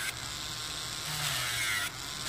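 Electric nail drill with a ceramic bit running steadily, buzzing as it grinds the polish off a fingernail.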